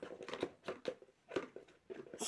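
Faint, scattered taps and scratches of a cat's paw on a cardboard box as it reaches in for a small plastic toy.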